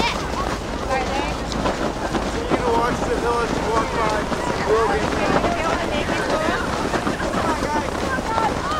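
Wind buffeting the microphone, with many voices calling and chattering at once in the background.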